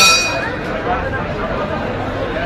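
A ring bell struck once, a single sharp clang that rings on and fades within about half a second, signalling the start of the round, over the chatter of the crowd in the hall.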